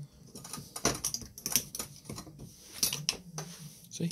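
Flat-blade screwdriver prying spot-welded nickel strip off the terminals of 18650 lithium-ion cells in a power-tool battery pack: a string of irregular sharp metal clicks and snaps as the welds pop free.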